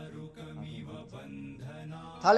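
Quiet background music of a chanted mantra, pitched voice lines over a steady low drone.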